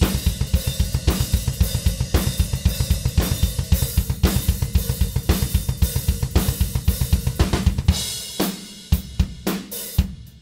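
Drum kit played with a fast, even double bass drum run under snare hits and a hi-hat kept open by a Gibraltar Double Drop Clutch, so the hi-hat rings with a washy sizzle while both feet are on the bass pedals. About eight seconds in, the bass drum run stops and a few separate heavy hits follow.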